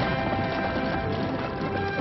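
Horses' hooves galloping fast as a team pulls a stagecoach, mixed with a film music score of held notes.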